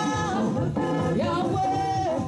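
Gospel hymn sung in worship, a voice holding long notes and sliding between pitches, with a long held note near the end.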